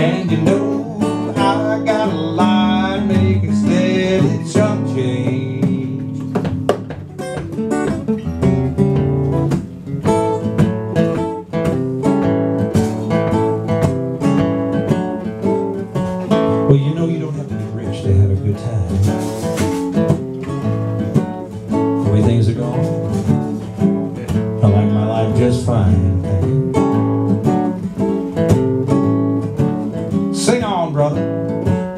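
Two acoustic guitars playing an instrumental break together, a steady run of strummed chords and picked notes.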